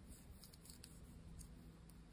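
Near silence, with a few faint clicks of metal knitting needles as stitches are worked.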